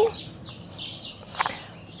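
Small birds chirping: a rapid run of short, high chirps, two or three a second.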